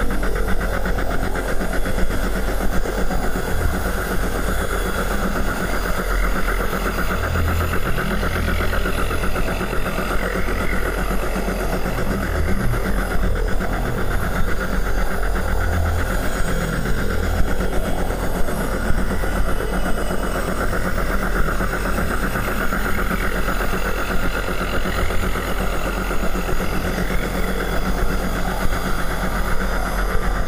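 Industrial noise music: a loud, dense, steady machine-like drone with an irregularly pulsing low rumble and a hissing band above it, unchanging throughout.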